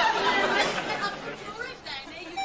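Several people talking over one another, a woman's voice among them, getting quieter near the end.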